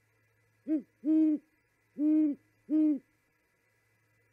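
Male great horned owl hooting a four-note phrase: a short first hoot, then three longer ones, each low and slightly rising then falling in pitch.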